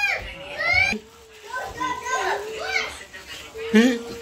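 Children's high-pitched voices chattering and exclaiming in short bursts with brief pauses, with a loud outburst shortly before the end.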